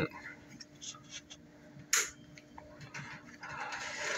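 Plastic quick-release barbell clamp being handled, with one sharp click about two seconds in as its lock lever is pushed down, and faint small ticks and a soft rustle around it.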